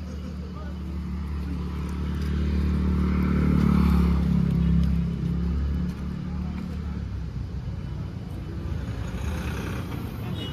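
Motor vehicle engine running, a steady low hum that grows louder over the first few seconds and eases off about six seconds in.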